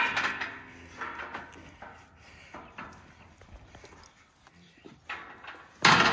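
Steel squeeze chute rattling and knocking as the animal held in it shifts its weight, with a loud metal clang near the end.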